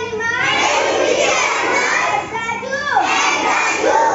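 A young boy reciting a poem in a loud, sing-song voice, with other children's voices in the room behind him.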